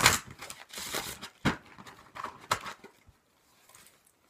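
Tarot cards being handled and drawn from a deck: a run of crisp paper rustles and sharp snaps, loudest in the first second and a half, thinning to a few faint ticks near the end.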